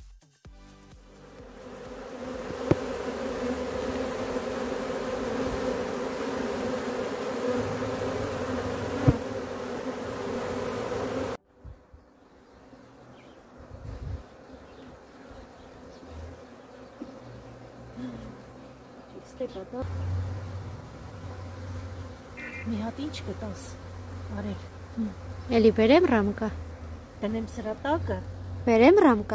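Honeybees buzzing around their wooden hives, a loud steady hum that cuts off suddenly about eleven seconds in.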